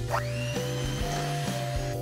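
Electric hand mixer starting up in a bowl of batter: its motor whine rises quickly in pitch, then holds a steady high tone. Background music plays underneath.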